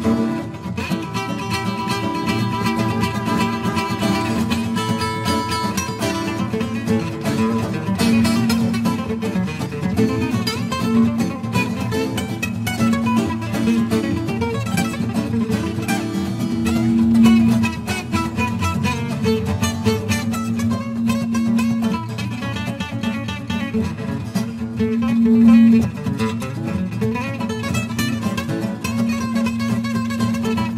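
Three acoustic guitars, steel-string, nylon-string and a Selmer-style gypsy jazz guitar, playing an instrumental break together: lead picking over a steady, repeating bass line.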